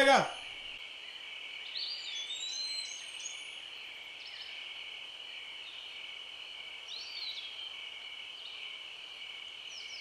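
Outdoor ambience of a steady, high-pitched insect chorus. Over it a bird gives a short whistled call that rises and then falls, about two seconds in and again about seven seconds in.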